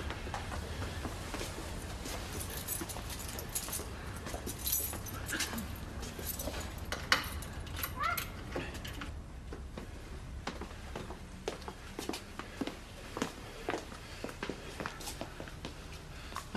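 Irregular clicks, rattles and scuffs of a door being worked open and footsteps, over a steady low hum, with a short rising squeak about eight seconds in.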